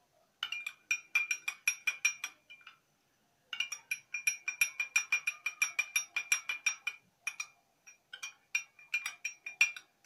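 Metal spoon stirring liquid in a small drinking glass, clinking against the glass several times a second with a ringing tone. The stirring stops briefly about three seconds in and again around seven seconds.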